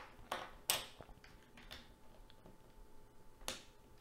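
A few soft clicks and brief rustles of a USB Type-C stick being handled and pushed into a Chromebook's port, most of them in the first second and one more near the end.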